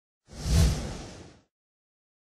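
A logo-sting whoosh sound effect with a deep low boom. It swells in about a third of a second in, is loudest around half a second in, and fades away within about a second.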